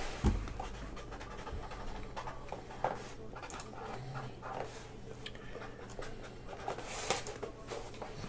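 Faint room sound: a low steady hum with a few light clicks and soft rustles scattered through it.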